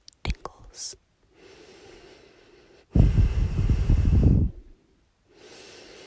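Breathing close to the microphone: a few short clicks in the first second, then a soft inhale, a loud exhale from about halfway that blows on the mic, and another soft inhale near the end.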